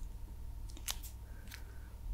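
Two short, crisp clicks close to the microphone, about two-thirds of a second apart.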